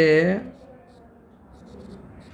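A man's voice ends a phrase in the first half second, then faint, light scratching of a stylus writing on a tablet screen.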